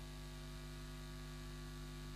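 Steady, faint electrical mains hum with a light hiss beneath it, unchanging throughout.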